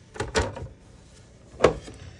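Hinged plastic cover of an RV's breaker and 12-volt fuse panel being opened: a few quick clicks in the first half second, then one sharp knock about a second and a half in.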